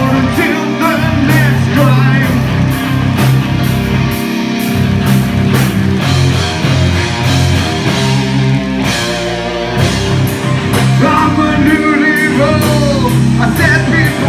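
A live rock band playing loud, with electric guitars and bass over a drum kit keeping a steady beat on the cymbals. A male singer's voice comes in over the band in the first couple of seconds and again near the end.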